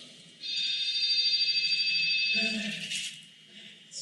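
A steady high-pitched tone, several pitches sounding together, starting about half a second in and fading out after about two and a half seconds.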